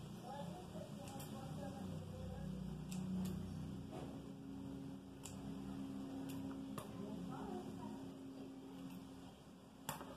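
Quiet handling of soft modelling clay and a clear plastic mould, with a few faint light clicks over a steady low room hum.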